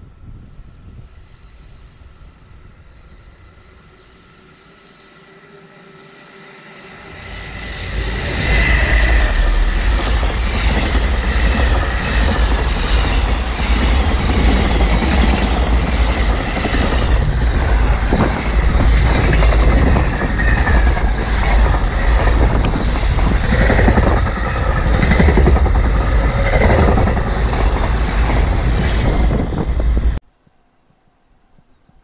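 JR Freight container train passing close by: a short build-up as it arrives, then from about eight seconds in a loud, steady run of wagons with the wheels clattering over the rail joints in an even rhythm, until the sound cuts off suddenly.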